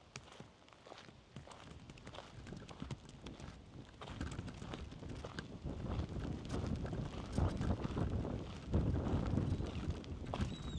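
Footsteps crunching on a gravel path in an irregular stream of short steps, getting louder in the second half.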